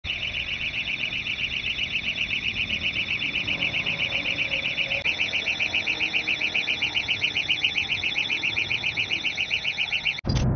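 Travel warning alarm of a battery-powered trackless transfer cart: a high-pitched electronic beep pulsing rapidly, about six times a second, without a break.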